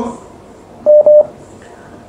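Two quick beeps at one steady pitch from a telephone line, as a caller is connected to the call.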